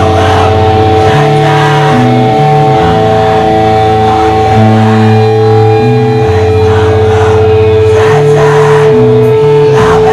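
Live rock band playing loud with distorted guitars, bass and drums. A high guitar tone is held steadily throughout while the bass line changes note every second or so.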